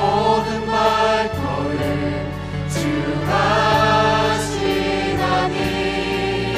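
Live worship song: a woman sings into a microphone with other voices, backed by a band of piano, synth, guitars and drums keeping a steady beat.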